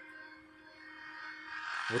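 Faint music with steady held tones, playing quietly from a YouTube video through the mini projector's small built-in speaker.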